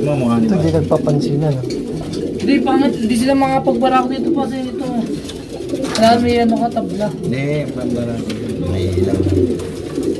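Pigeons cooing repeatedly in a loft: the low, wavering courtship coo of a cock paired with a hen in a breeding pen at pairing time.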